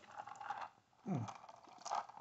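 Faint rustling and scraping of a handheld camera being moved, with a short low voiced sound about a second in.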